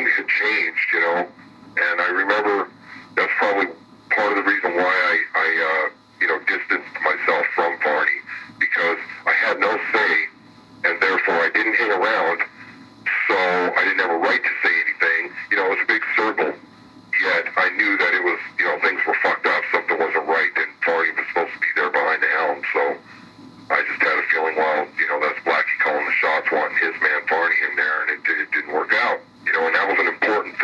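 Speech only: interview talk running on, broken by short pauses between phrases.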